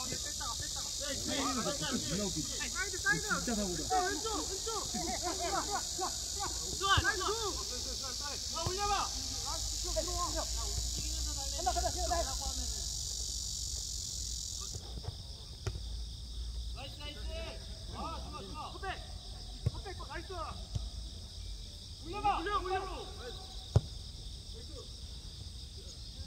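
Cicadas buzzing steadily in the trees, the buzz dropping in level about fifteen seconds in, under players' shouts across the pitch and a few sharp kicks of the ball.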